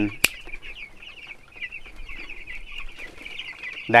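A flock of 11-day-old broiler chicks peeping steadily, many short high chirps overlapping. A single sharp click sounds just after the start.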